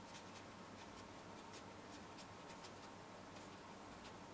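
Faint, soft scratches of a watercolour brush on paper, a few short irregular strokes a second over quiet room tone.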